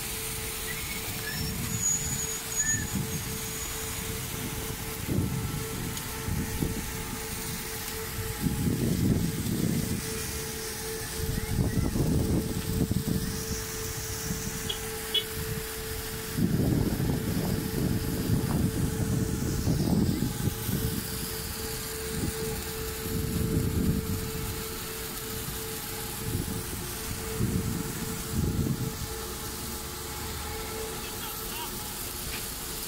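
A steady siren tone held without change, typical of the commemorative sirens sounded at Godzina W. Under it comes an outdoor rumble that swells and fades every few seconds.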